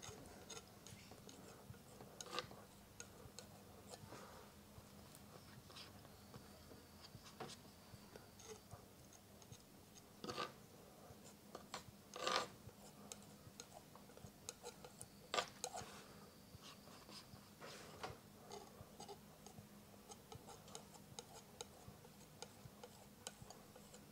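Faint, scattered scrapes and taps of a steel palette knife dragging oil paint across a canvas panel in short strokes, with a few louder scrapes near the middle. A low hum runs underneath.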